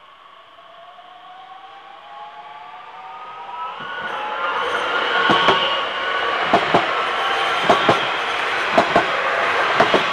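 Regional multiple-unit train passing close by: a whine that rises in pitch as it approaches, then loud running noise with pairs of wheel clacks about once a second as each bogie passes.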